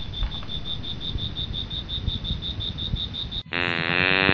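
Cricket chirping sound effect, a high pulsing chirp about seven times a second, edited in over a 'boring' moment. Near the end it cuts off and a short, louder pitched sound follows.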